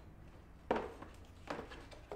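Cardboard gift box being opened and handled: a sharp knock about two thirds of a second in, then a lighter knock near the end, as the lid comes off and the box is set down.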